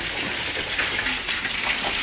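Pork chops frying in oil in a skillet: a steady sizzle.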